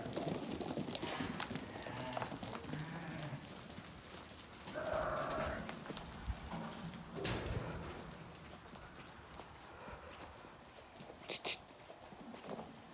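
A flock of ewes trotting through a barn alley, their hooves scuffling and knocking on the dirt floor, with one brief sheep bleat about five seconds in.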